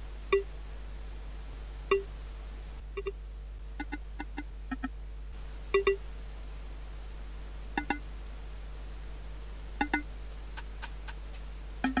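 DX7-style FM percussion sound played on an FM7 software synth: single short, pitched, wood-block-like knocks at irregular intervals, some in quick pairs. A faint steady hum and hiss lie underneath.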